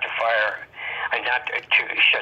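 Speech only: a man talking continuously, the voice thin and phone-like.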